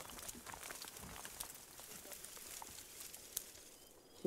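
Faint rustling and crackling of dry brush and leaf litter being trampled and handled, with scattered small snaps and ticks.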